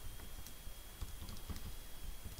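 Faint, irregular taps of keys being pressed, a few soft clicks over quiet room noise, as a sum is keyed in.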